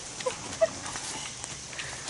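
Horse's hooves stepping on gravel: a few scattered clops and knocks.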